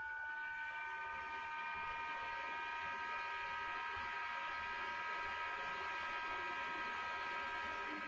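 A small electric motor whining steadily: several high, even tones that hold without change.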